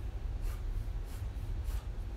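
Room tone: a steady low hum with a few faint, soft rustles about half a second apart.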